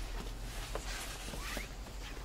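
Faint rustling and handling noise over a low steady hum.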